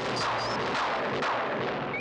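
Cartoon magic sound effect from Skeletor's staff: a dense, steady crackling rumble with a few sweeping swoops running through it.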